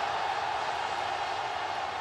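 Steady background noise: an even hiss with no speech and no distinct events.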